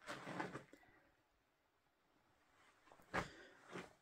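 Near silence, broken by a faint sound at the very start and a short knock about three seconds in, with a fainter one just before the end.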